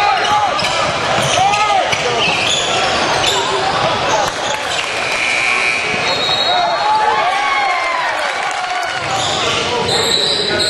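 Game sound from a basketball game in a gym: a ball bouncing on the hardwood floor, short sneaker squeaks, and the voices of players and spectators.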